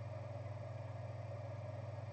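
Steady low hum with a fainter higher tone above it: the room tone of a small studio.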